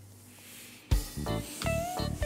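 Background music, nearly silent for the first second, then coming back in sharply with a pitched, sliding melody.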